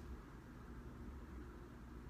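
Faint, steady background hiss with a low hum: room tone, with no distinct sound event.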